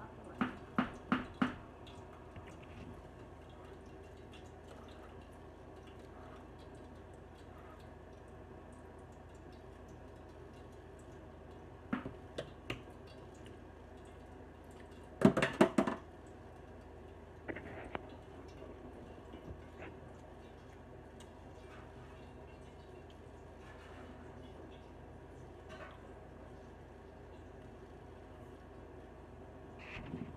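A person biting into and chewing a fried mini hotdog: short clusters of sharp crunching and mouth sounds just after the start, around twelve seconds and, loudest, around fifteen seconds, over a low steady room background.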